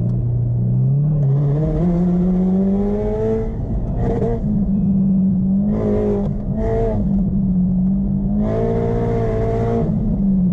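Subaru WRX STI's turbocharged flat-four engine, heard from inside the cabin, driven hard on an autocross course. The revs rise over the first three seconds and then hold around the same pitch. The throttle comes on hard in short bursts and in one longer push near the end.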